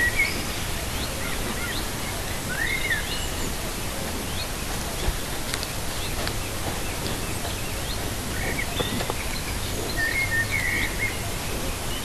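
Scattered short bird chirps and whistles over a steady background hiss, with a few faint clicks; the chirps come in clusters at the start and again near the end.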